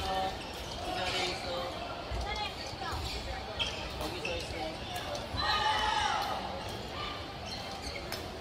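Badminton hall ambience: short racket-on-shuttlecock hits and players' voices echoing in a large gymnasium, with one call rising out of the chatter about two-thirds of the way in.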